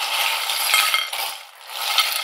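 A pile of small metal charms jingling and clinking as they are stirred by hand; the rattling eases off briefly about a second and a half in, then starts again.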